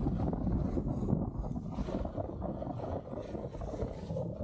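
Snowboard sliding and scraping over groomed snow, a continuous rough rush that rises and falls with the turns, mixed with wind buffeting the microphone.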